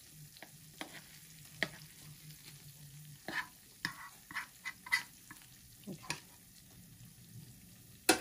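Metal fork scraping melted raclette cheese out of a small non-stick raclette pan onto potatoes: a scatter of short scrapes and clicks, busiest from about three to six seconds in.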